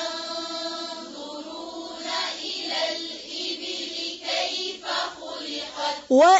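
A group of voices chanting a Quran verse together in slow, drawn-out recitation, with long held notes.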